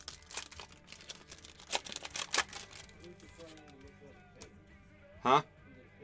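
Foil trading-card pack wrapper crinkling and crackling in the hands as it is torn open, a few sharp crackles in the first couple of seconds. Faint music plays behind.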